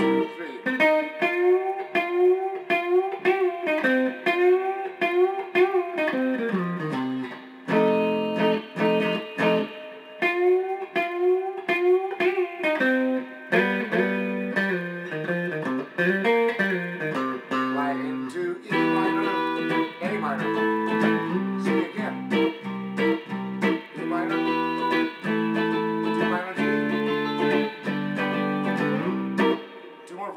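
Electric guitar through a small amplifier, playing the song's rhythm part as a run of bar-chord changes in a steady strummed rhythm. It stops shortly before the end.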